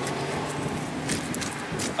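Steady background noise with a faint low hum, broken by a few faint short clicks.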